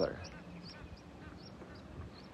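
Quiet lakeshore background with a few short, high bird chirps scattered through the first second or so.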